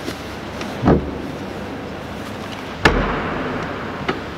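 A dull thud about a second in, then a sharper knock with a short ring near three seconds: a kit bag being set into a hull-side locker and the locker hatch being shut.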